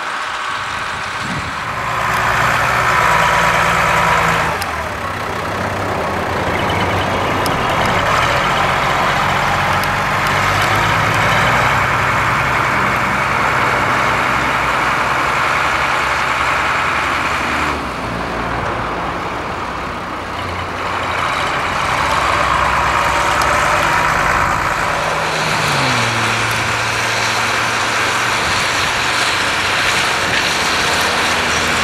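Ford tractor diesel engines working under load as they pull potato de-stoners, a steady engine note over broad machinery noise from the de-stoner. The sound changes abruptly twice, and near the end the engine note drops in pitch.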